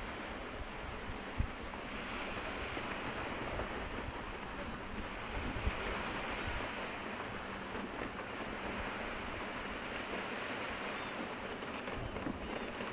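Steady wind and sea noise, with wind on the microphone. Two brief low thumps come about a second and a half in and near the middle.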